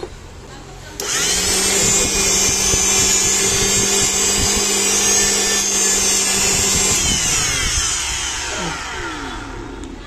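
Preethi mixer grinder motor, freshly rebuilt with a new bearing, switched on about a second in and running empty at full speed with a steady whine. About seven seconds in it is switched off and winds down, its pitch falling. It runs smoothly, with no bearing noise: 'मस्त काम' (working great).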